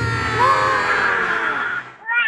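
Intro jingle: a low steady drone under one long, wavering animal-like cry that glides up in pitch about half a second in and fades near the end.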